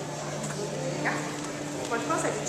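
Indistinct chatter of a crowd of visitors, over a steady low hum. A brief rising voice sound comes about a second in.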